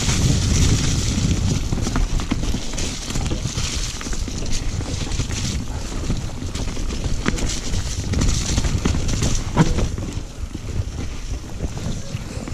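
Wind rushing over the camera microphone as a mountain bike rolls fast down a muddy trail, with tyre and bike rattle and a few sharp knocks from bumps.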